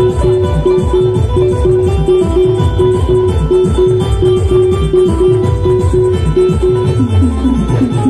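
Loud amplified Timli dance music: an electronic keyboard plays a repeating short-note riff in a plucked-string sound over fast stick-played drums. Near the end the riff stops and the band plays a short fill before it returns.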